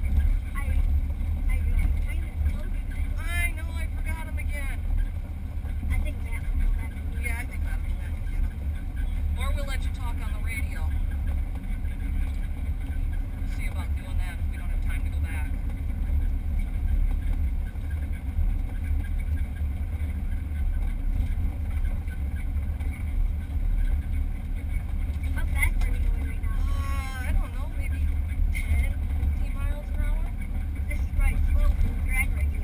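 Steady, low rumble inside a drag race car's cockpit as the car moves slowly, with a few faint, muffled voices now and then.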